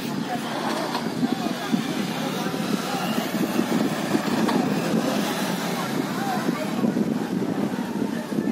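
Distant raised voices of people quarrelling in the street, over a steady motor rumble.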